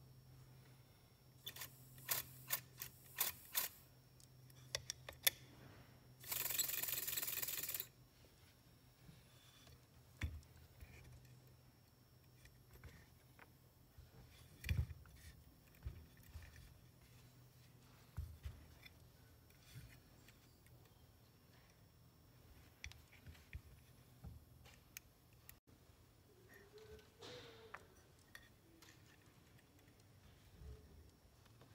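Small metal clicks and light knocks from handling the wheels and valve gear of an Accucraft Ruby live steam locomotive chassis, a quick run of clicks in the first few seconds and scattered knocks after. About six seconds in, a loud hissing rattle lasts about a second and a half.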